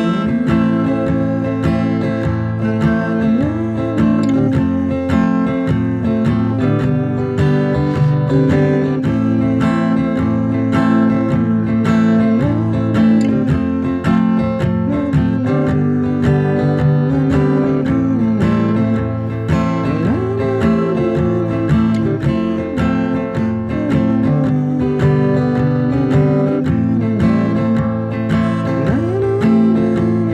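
Acoustic guitar strummed steadily in a down-up pattern, cycling through A minor, F and G chords.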